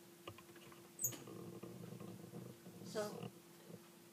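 Quiet meeting-room tone with a steady hum, a sharp click about a second in, and faint indistinct rustling and murmur after it.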